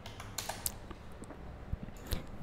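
A few quiet, separate computer keyboard keystrokes, as a search phrase is finished and entered.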